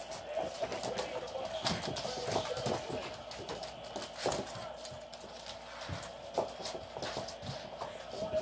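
Dogs' and puppies' claws clicking and scrabbling on a hard wood-effect floor as they play, in quick irregular taps.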